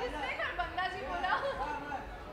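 Chatter of several overlapping voices, none of them clear.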